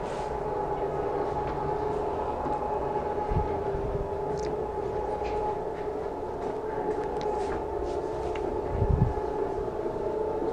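Motorised projection screen rolling up, its motor running with a steady hum. There are a couple of low thumps, one about three seconds in and a louder one near the end.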